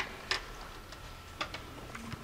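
Four short, sharp clicks or taps, spaced irregularly, over quiet room tone.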